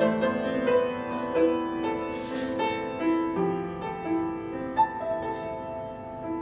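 Solo jazz piano on an upright piano: an unhurried passage of held chords and melody notes ringing into one another, with one sharper accented note near the end.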